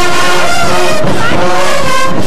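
Marching band brass section of trumpets, trombones and sousaphones playing loudly together, with notes sliding in pitch about a second in.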